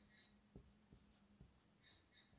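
Very faint sound of a marker pen writing on a whiteboard, with a few soft ticks of the pen tip on the board.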